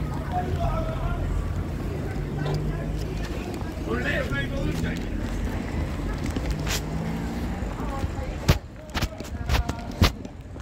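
Street ambience: a vehicle engine running with a steady low rumble, with voices in the background. Near the end come several sharp knocks.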